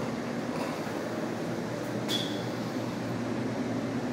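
Wall air-conditioning unit running with a steady hum, and a brief click about two seconds in.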